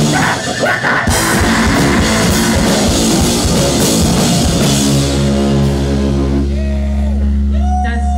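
Live rock band playing loud, with pounding drums and distorted guitar. About five seconds in the drums stop and the band lets a held chord ring over a steady low bass note, and voices start to shout near the end as the song finishes.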